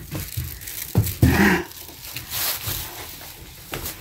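Stiff broom bristles sweeping across a wooden plank floor in several short swishing strokes, with a single knock about a second in.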